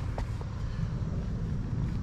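Steady low outdoor rumble, with two faint ticks in the first half second.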